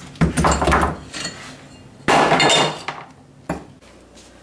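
Hammer blows breaking up an old tiled kitchen countertop, the tiles cracking loose with clattering shards. There are two main crashes, one just after the start and one about two seconds in, then a smaller knock near the end.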